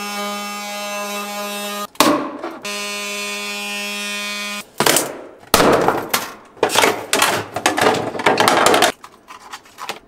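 A handheld power tool runs at a steady whine, cutting into a battery's metal case in two runs of about two seconds with a short rasping break between. Then come a few seconds of irregular scraping and knocking as the metal case panels are pried apart and pulled off.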